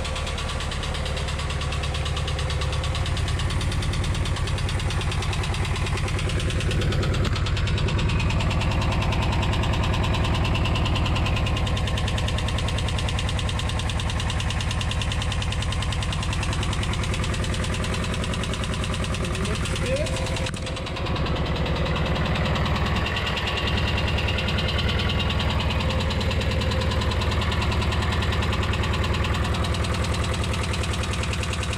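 VW T3 (T25) water-cooled flat-four petrol engine idling steadily shortly after being started, with a quick, even tappet tick over the running. The owner calls it ticky and tappity and puts it down to the van not having had a long run for a while.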